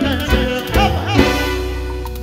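Live chicha (Peruvian cumbia) band music: a wavering, sliding melodic lead over a steady bass line.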